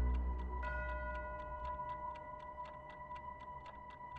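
Fast, even clock ticking, about five ticks a second, as the low notes of a dark film score fade out beneath it. A few steady high tones come in about half a second in and hold.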